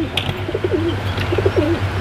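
Domestic pigeons cooing: about four short coos, each bending up and down in pitch, over a steady low hum.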